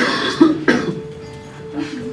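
Three short, sharp vocal bursts in the first second, like coughs, followed by one steady held note of accompanying music.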